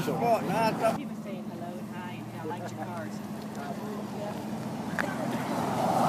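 A car engine running with a steady low hum, growing slowly louder over the last couple of seconds as a vintage sedan drives up. A man's voice is heard briefly at the start.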